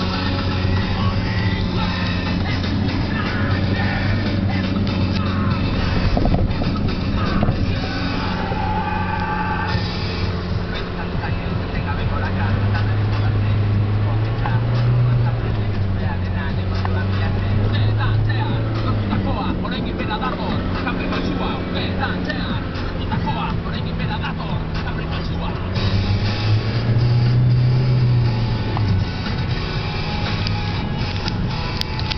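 Nissan Terrano II 4x4 heard from inside the cabin while driving, engine and road noise running steadily, the engine note rising and falling in slow swells several times. Music and indistinct voices play in the background.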